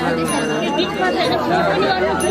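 Several people talking at once, their voices overlapping into chatter.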